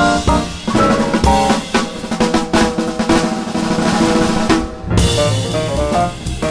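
Jazz piano trio: piano, double bass and drum kit play together for the first second or so. Then the drum kit takes a break on its own, with quick snare strokes and cymbals, while the bass drops out. Just before the end the whole trio comes back in.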